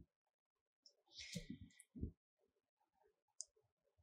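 Near silence with a few faint clicks and soft knocks from a second to two seconds in, and a single tiny tick near the end: hands working a crochet hook through yarn.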